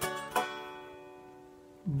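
Electric guitar: a chord picked at the start and plucked again about a third of a second later, then left ringing and slowly fading.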